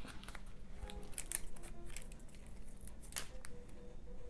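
Cut paper being handled and pressed onto a collage by hand: light rustles with scattered small clicks and taps, the sharpest about three seconds in, over faint background music.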